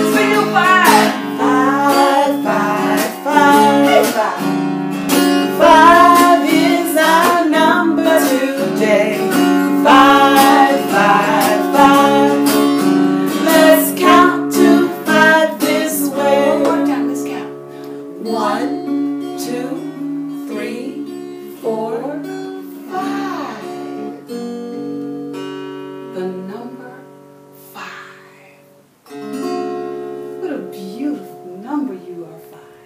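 Acoustic guitar strummed in changing chords, with a woman's voice singing along over the first half. Past the middle the playing goes on more softly, dropping low just before the end.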